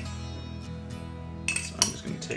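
Soft background guitar music with two sharp clinks near the end, a metal spoon striking a small glass jar of elderberry conserve.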